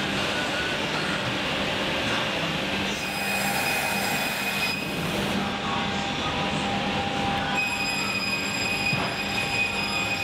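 Edge banding machine running as it glues edge strip onto melamine-faced boards: a steady mechanical noise with high whining tones that come and go, strongest from about three seconds in and again from near eight seconds.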